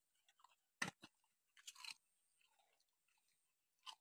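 A dog biting and chewing a crisp biscuit: a few faint, short crunches about a second in, just before two seconds and near the end.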